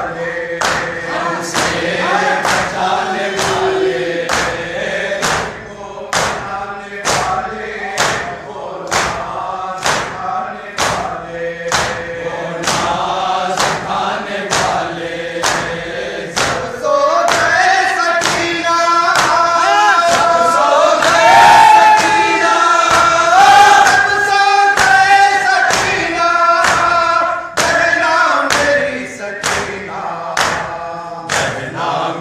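A group of men chanting a noha in unison to rhythmic chest-beating (matam). Sharp hand-on-chest strikes keep an even beat of about three every two seconds under the voices. The singing swells louder for several seconds past the middle.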